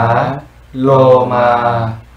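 A male voice chanting the Pali meditation words slowly, one per breath: the end of 'kesā' (head hair), then 'lomā' (body hair) held for about a second.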